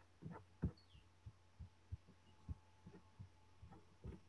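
Faint, scattered clicks and soft thumps of a computer keyboard and mouse being used, picked up by a laptop microphone over a low steady hum.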